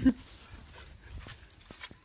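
A short voiced exclamation right at the start, then wind rumbling on the phone's microphone with a few faint ticks.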